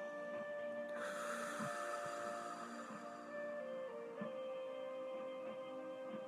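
Soft, slow background music of long held notes, shifting to a new chord about four seconds in, with a soft hiss rising briefly about a second in.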